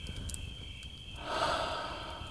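A soft breathy exhale that swells up about halfway through, over faint steady background ambience with a thin high tone.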